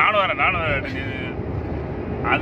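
Steady road and engine noise inside a moving car's cabin, with a man's voice over it for about the first second and a half.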